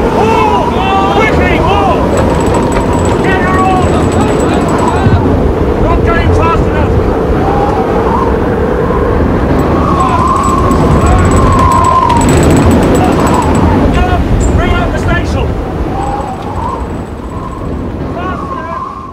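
Storm at sea: gale wind howling through a sailing ship's rigging and heavy seas, a loud continuous roar, with men's voices shouting over it at intervals.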